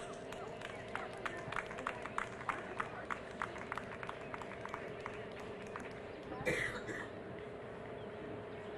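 A horse's hoofbeats at a canter on arena footing, a run of sharp irregular thuds about three a second that fade out about halfway through, over a steady hum. Near the end a brief human sound, like a cough, stands out as the loudest thing.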